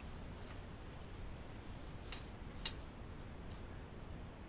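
Quiet handling of a plastic bag in a glass mixing bowl: faint crinkles, with two sharp clicks a little after two seconds in.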